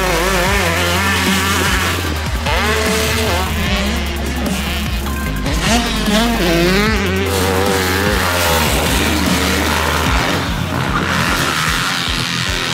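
Motocross dirt bike engines revving up and backing off again and again as riders go round the track and over jumps, over background music with a steady bass line.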